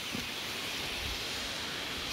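Steady, fairly quiet hiss of food sizzling in a metal wok over a wood fire.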